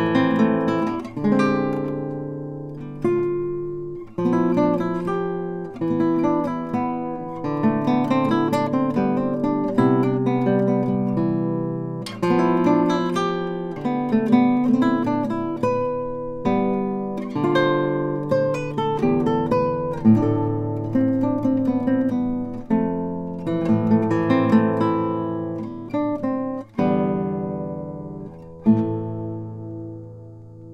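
Solo classical guitar, a 1970 Shunpei Nishino instrument, playing a slow piece of plucked melody and chords. Each note is left to ring and decay, and the last notes fade out near the end.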